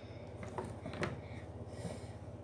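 Faint swishing of a hairbrush through a toy unicorn's synthetic hair, over a steady low hum, with a soft bump about a second in.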